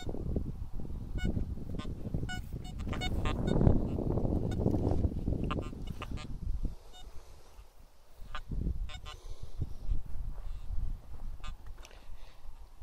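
Metal detector sounding short, repeated signal tones as its search coil is swept over freshly dug soil, signalling a metal target in the clods. Heavy rustling and scraping of the coil and the ground run under the tones, loudest about four seconds in and dying down near the middle.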